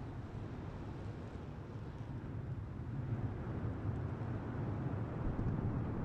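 Low rumble of the Starship Super Heavy booster's 33 Raptor engines at ignition and liftoff, growing louder about halfway through.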